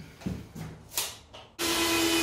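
A few light handling knocks, then about one and a half seconds in a cordless drill starts up and runs steadily at a held pitch, drilling holes into the brick wall.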